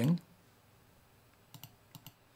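Faint computer mouse clicks: two close together about a second and a half in, and one more at the end.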